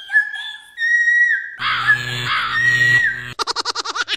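A shrill, high-pitched scream held on one note, getting louder and fuller about a second and a half in, then breaking into a fast wobbling warble near the end.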